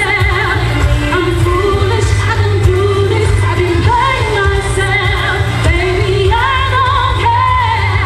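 A woman singing a pop song live into a handheld microphone over a loud amplified band or backing track with heavy bass, heard through the concert sound system.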